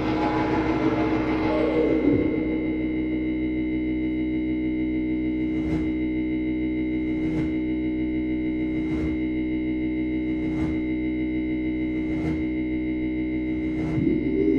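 Drone music played live: a sustained, organ-like chord of steady tones. A noisy swell dies away in the first two seconds, then soft ticks repeat about every one and a half seconds over the held chord.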